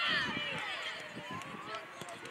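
Several children's voices shouting and calling at once across a football pitch, tailing off toward the end.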